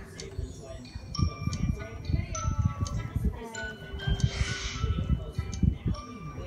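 Audio from a video playing on a smartphone: music of short held notes stepping from pitch to pitch, with voice sounds mixed in.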